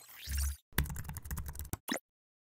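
Computer keyboard typing: a quick run of key clicks, about ten in a second, as text is typed into a search bar. It follows a short swish with a low thud at the start, and one last separate click comes near the end.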